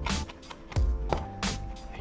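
Japanese chef's knife chopping parsley on a wooden cutting board: a few separate, unevenly spaced strikes of the blade on the wood, over background music.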